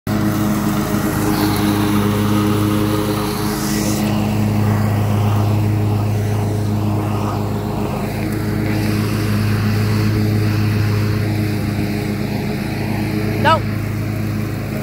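Engine of a Cub Cadet RZT S zero-turn riding mower, running steadily at a constant speed as the mower drives across the grass.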